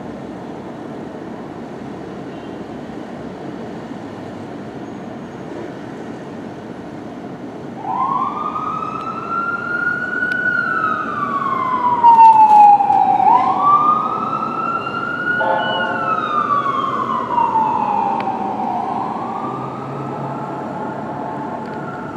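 Fire engine siren wailing over steady city traffic noise. It starts about a third of the way in and rises and falls in slow sweeps of about five seconds, loudest near the middle. A steady horn tone joins in later.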